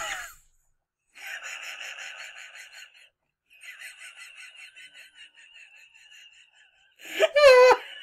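A woman laughing helplessly: two long runs of wheezing, near-silent laughter, high breathy pulses at about seven a second, then a voiced laugh near the end whose pitch rises and falls.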